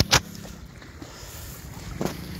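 Wind and handling noise on a phone microphone: a sharp knock just after the start, then a steady rush with a faint low hum.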